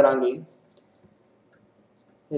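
A few faint, light clicks of a stylus tapping on a pen tablet while writing, after the end of a spoken word.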